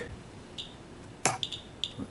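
A few light clicks and taps of hard plastic being handled, the sharpest about a second in, followed by two or three smaller ticks, as a clear plastic case of radioactive check sources is picked away and set down.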